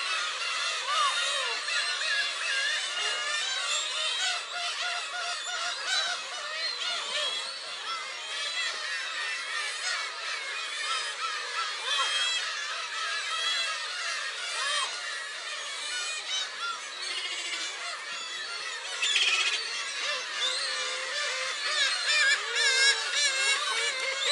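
A large flock of black-tailed gulls calling continuously, with many calls overlapping one another. The calling grows louder near the end.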